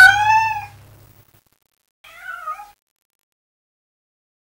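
A cat meowing twice: a longer call that rises then falls in pitch, then a shorter, wavering meow about two seconds in.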